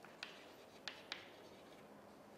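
Chalk writing on a chalkboard, faint: three short taps of the chalk against the board, the first shortly after the start and two close together near the middle.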